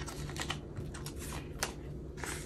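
Clear plastic binder envelope pockets and paper dollar bills being handled: a run of light, sharp clicks and crinkles, the sharpest about one and a half seconds in.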